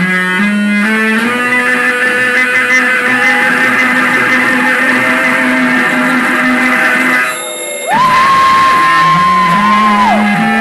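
Live band playing an instrumental passage with electric bass and guitar. A little past seven seconds the sound briefly drops, then a single high note bends up and is held for about two seconds.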